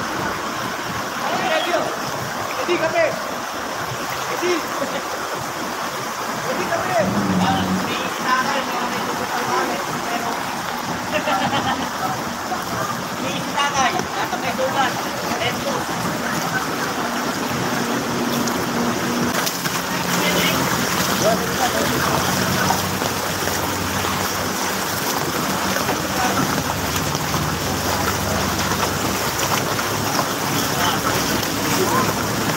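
Floodwater splashing and sloshing as it is churned up in a flooded street, with an engine humming low, briefly about seven seconds in and more steadily through the second half. Voices in the background.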